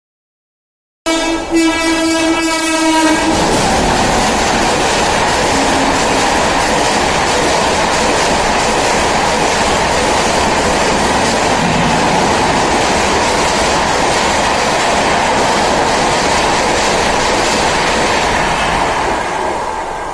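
A locomotive horn sounds for about two seconds, then an express train runs non-stop through the station at high speed, with the loud steady rush and rattle of its coaches passing close by. The noise begins to fade near the end as the train clears the platform.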